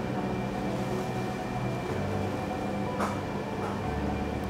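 Steady low room hum with a thin high tone above it, and a brief soft rustle about three seconds in.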